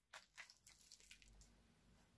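Faint wet squishes of a gloved hand squeezing soft butter, egg, oil and powdered sugar together in a glass bowl: a handful of short, quiet sounds over the first second or so.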